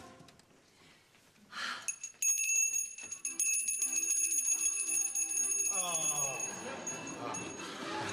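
A small hand bell rung rapidly and continuously, starting about two seconds in: the Christkind bell that signals the Christmas Eve gift-giving. Quiet music comes in under it about a second later.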